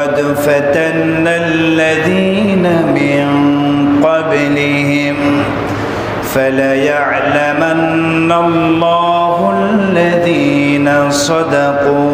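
A man reciting the Quran in Arabic in a slow, melodic chant, holding long notes with ornamented turns in phrases a few seconds long, with short breaths between them.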